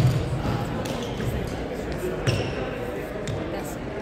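Echoing sports-hall din of background voices, broken by a few sharp knocks and low thuds from badminton play on neighbouring courts: racket hits and footfalls on the wooden floor, one at the start, one about two seconds in and one about three seconds in.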